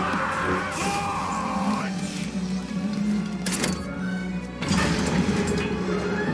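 Film soundtrack from a lightsaber battle: dramatic music under the fight's sound effects, with two sharp hits in the second half.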